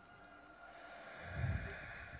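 Film soundtrack playing faintly: sustained high tones with a low rumble that swells and fades about a second and a half in, tense sound design that feels like a pressure.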